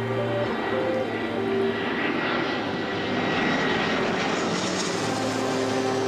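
Twin-engine jet airliner passing overhead: a rushing engine noise that builds, is strongest through the middle and eases toward the end, over sustained background music notes.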